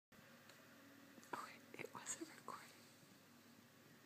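Near silence, broken by a few brief whispered sounds from a person between about one and a half and two and a half seconds in.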